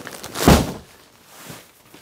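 A single dull thump about half a second in, followed by a fainter tap.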